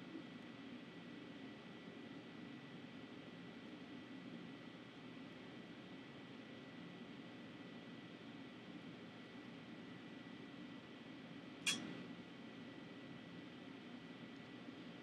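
Quiet room tone: a faint steady hiss with a thin high whine running through it. One sharp click comes a couple of seconds before the end.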